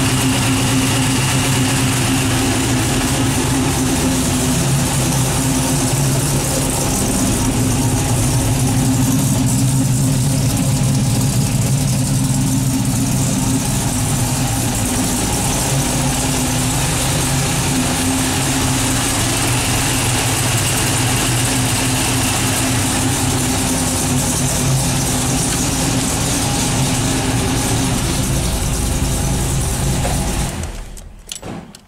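LS V8 swapped into an Oldsmobile Cutlass, idling steadily after a cold start from eight months' storage. The owner says it is running rich and still needs a tune.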